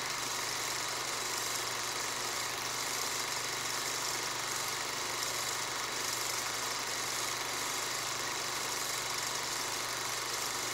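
A steady, unchanging mechanical drone: a low hum under an even hiss, with no breaks or changes.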